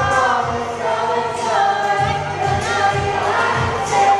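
Several voices singing together through microphones over amplified backing music with a steady beat.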